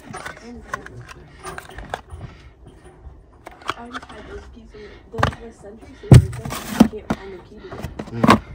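Objects being handled and moved inside a metal wall safe: scattered clicks and scrapes, with a sharp knock a little after six seconds in as the loudest sound.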